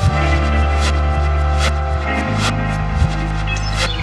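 Electronic music from a DJ mix, dominated by a low sustained bass drone that shifts pitch a little past halfway, with a few sparse high clicks over it.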